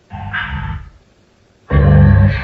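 Ghost-box (Necrophonic) app audio replayed at half speed: two short bursts of distorted, voice-like sound, about a second apart, which the edit captions as a spirit saying "your King that woman was her".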